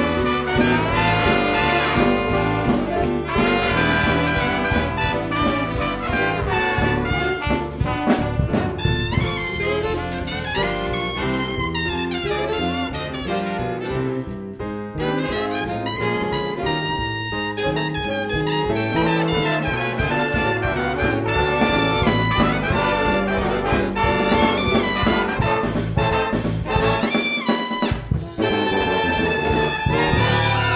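A youth jazz big band plays an instrumental swing passage, with trumpets, trombones and saxophones over piano, guitar, bass and drums.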